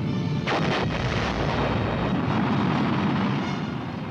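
Missile launch: a loud, continuous rocket-motor roar, with a sharp crack about half a second in. Music plays under it.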